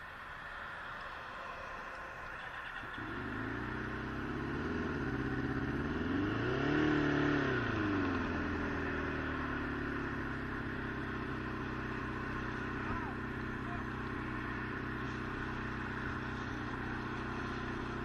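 Motorcycle engine, heard from the rider's helmet camera: it comes in about three seconds in, revs up and back down near the middle, then runs steadily at low speed, over a haze of road and wind noise.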